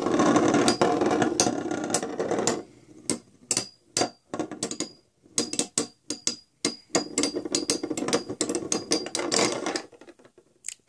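Two metal Beyblade spinning tops grinding against each other in a plastic stadium for about the first two and a half seconds. They then clack together in separate sharp clicks at irregular spacing as they wobble.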